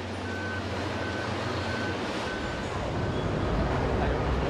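Fire engine's reversing alarm beeping steadily, a little under twice a second, over its idling diesel engine; the beeps stop shortly before the end.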